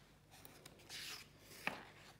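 A paper page of a picture book being turned by hand: a faint papery rustle about a second in, then a single light tick as the page is flipped over.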